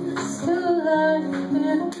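A woman singing, accompanying herself on acoustic guitar, in a live acoustic folk-pop performance.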